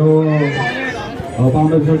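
A person's voice, with a wavering high-pitched vocal sound over it about half a second in.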